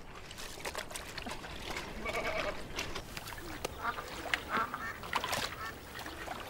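Domestic geese honking now and then, in a few short calls, over faint clicks and light background noise.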